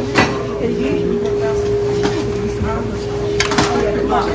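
Busy diner background: indistinct voices and chatter with a steady hum running underneath, and a few sharp clatters just after the start and again shortly before the end.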